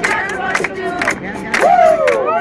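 Crowd of onlookers calling out and shouting over a steady beat of about two strokes a second. A loud yell that rises and falls in pitch comes near the end.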